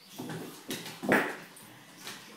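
Puppy play-fighting with a kitten: a few short puppy cries, the loudest just over a second in.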